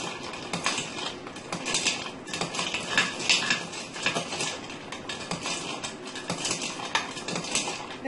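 A long spoon stirring ice cubes in a glass pitcher of lemonade: quick, irregular clinks and clicks of ice against glass, running on without pause.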